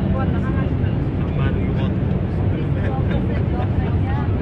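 Steady low drone of an airliner cabin in flight, with several people talking and laughing over it.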